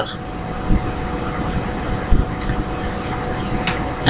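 Steady background rumble and hiss with a faint constant hum.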